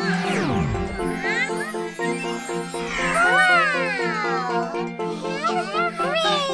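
Cheerful children's background music with steady repeating chords. About a second in, a sound effect sweeps quickly down in pitch. Wordless vocal sounds with gliding pitch come in around the middle and again near the end.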